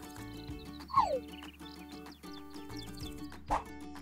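Light background music with steady held notes, and a short falling tone about a second in.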